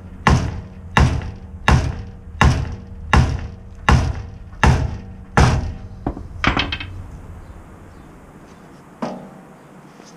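Sledgehammer striking a seized steel boat-trailer axle spindle: eight hard metal blows at a steady pace of roughly three every two seconds, each ringing briefly, then a few lighter metallic clinks and one last knock near the end. The spindle is stuck fast and does not budge.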